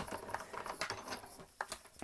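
Sizzix BIGkick manual die-cutting machine being cranked, pressing a platform sandwich with a metal die through its rollers: faint, irregular small clicks.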